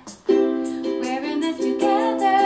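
A ukulele strummed in chords with a woman singing along. After a brief gap at the start, both come back in about a quarter second in.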